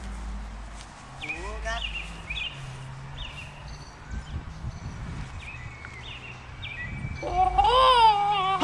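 Small birds chirping in short high calls scattered throughout, over a low wind rumble on the microphone. A brief voice sound comes about a second in, and voices rise near the end.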